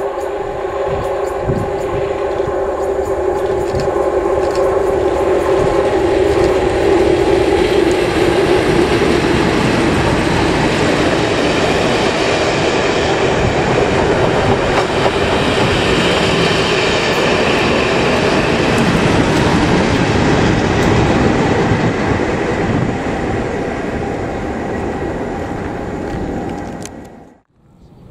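Two Class 37 diesel locomotives, each with an English Electric V12 engine, hauling a test train past at speed. The engine note grows louder over the first several seconds as they approach, followed by the loud, steady noise of the coaches passing, which fades away near the end.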